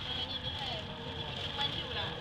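Light rail train running along the track, heard from inside the car: a steady running noise with a high hiss and a steady whine that grows stronger near the end. Faint voices in the car.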